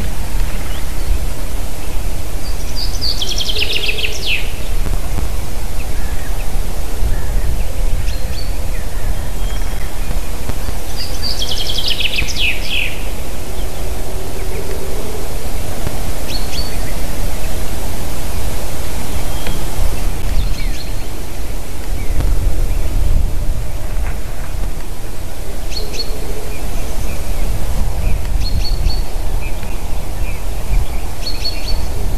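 Common chaffinch singing twice, each song a descending trill of about a second and a half, the second about eight seconds after the first. Short faint chirps are scattered through, over a steady low rumble.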